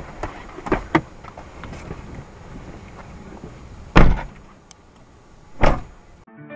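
Car doors being shut, heard from inside the cabin: two solid slams, the first about four seconds in and the second a second and a half later, after a few light clicks and rustles.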